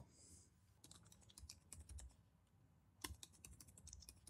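Faint keystrokes on a computer keyboard: a run of quick, irregular taps starting about a second in, with one sharper key press about three seconds in.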